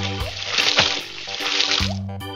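A watery splashing sound effect lasting about two seconds, laid over bright keyboard music, marking the paintbrush being dipped in paint.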